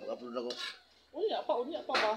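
A metal ladle stirring a thick white mixture in a black cooking pot, scraping and clinking against the pot, with a sharp clink about half a second in and another near the end.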